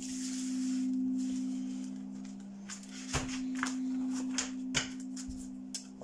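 Steady ringing drone of singing-bowl tones. In the first second or so cards swish as they are slid across a wooden table, and several light card clicks and taps follow in the second half.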